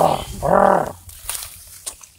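A person's loud, surprised exclamation, "ao!", called out twice: a short cry, then a longer drawn-out one about half a second in. Faint clicks and rustling follow.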